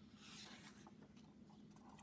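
A picture-book page being turned by hand: a faint, soft paper rustle lasting about half a second, starting just after the beginning.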